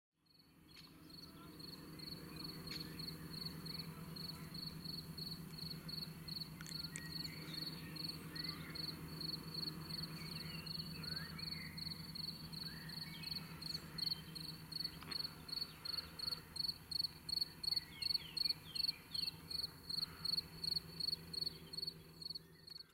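An insect, cricket-like, chirping in a steady run of about two to three short chirps a second, growing louder toward the end. Faint bird calls come in now and then over a low steady hum.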